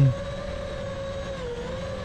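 iFlight Nazgul 5 FPV quadcopter's brushless motors and propellers whining in flight, a steady tone that sags slightly and then climbs again near the end as the throttle changes.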